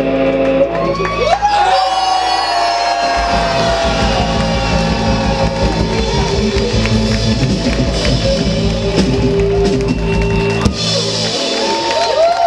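Live rock band playing the end of a song on acoustic guitar, bass and drums: held notes first, then a steady beat comes in a few seconds in, and the band stops about a second before the end.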